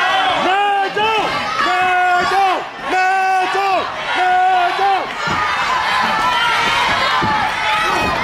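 A high-pitched voice from the audience gives four drawn-out, chant-like shouts in a row. Then comes crowd noise with a few short thuds from the wrestling ring.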